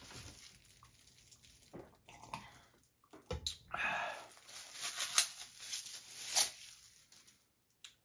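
Plastic wrapper crinkling and tearing in irregular bursts as a plastic fork is unwrapped, with a short knock just before it starts.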